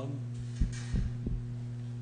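Steady electrical hum in the panel's sound system, after a brief "um", with three soft low thumps near the middle.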